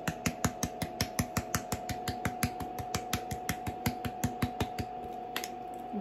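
Twist-top spice grinder clicking rapidly as it is turned, about eight clicks a second, stopping about five and a half seconds in, over a steady high hum.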